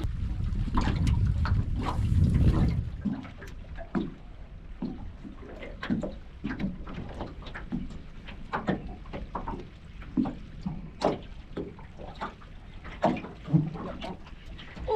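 Water lapping and slapping against the hull of a small aluminium dinghy, in irregular light knocks and splashes. A low rumble fills the first few seconds.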